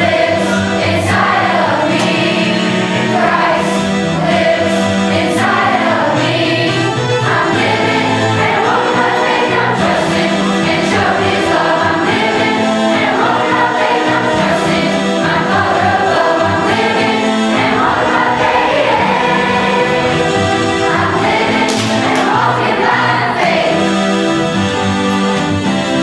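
Children's choir singing a Christian song together over instrumental accompaniment, loud and steady throughout.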